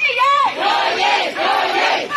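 Crowd of protest marchers shouting a slogan in unison with raised fists, answering a single leader's shouted call that ends about half a second in.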